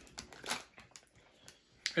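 A few faint, brief crinkles of a foil snack-chip bag as a hand reaches into it for chips.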